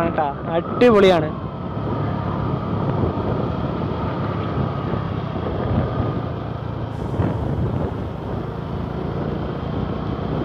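A two-wheeler's engine running steadily while riding, mixed with tyre and wind noise on the microphone. A brief spoken word comes at the start.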